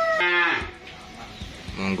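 A calf gives one short moo about a quarter of a second in, then the pen goes quieter until a man's voice starts near the end.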